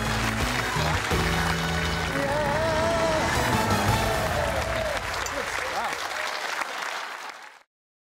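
Closing theme music with a steady bass line, over audience applause; it cuts off suddenly near the end.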